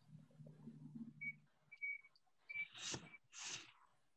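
A man's low hum with closed lips for about a second and a half, then two short, quiet breaths through the nose about three seconds in.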